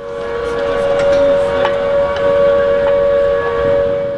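A loud, steady two-note tone, like a horn, swelling in over about the first second and then held without change in pitch, over a low rumble.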